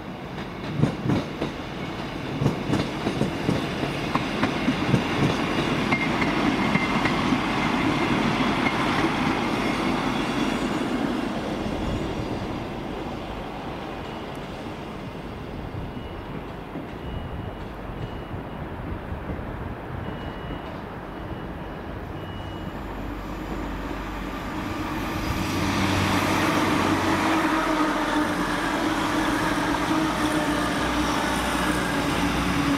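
East Midlands Railway Class 158 diesel multiple unit running past, its wheels clattering in rapid clicks over rail joints and pointwork in the first few seconds. Then a Grand Central Class 180 Adelante diesel multiple unit draws in, its engines humming louder as it comes past near the end.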